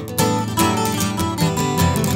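Acoustic guitar in standard tuning playing an Irish polka accompaniment: strummed chords in a quick, even rhythm.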